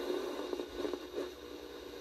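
Soft static hiss from a Magnavox handheld AM/FM radio tuned off-station, with no clear broadcast. It plays through turntable speakers.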